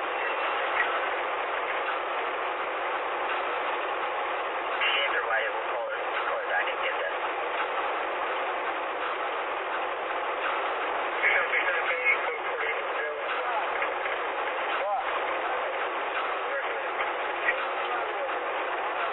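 Steady road and engine noise inside a moving police car's cabin, with a few short louder sounds about five and eleven seconds in.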